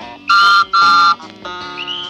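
A postman's whistle tooting twice, two short shrill blasts about half a second apart, over soft guitar music: the read-along record's signal to turn the page.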